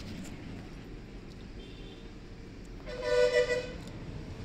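A vehicle horn sounds once, a pitched blast just under a second long, about three seconds in, over a low steady background rumble.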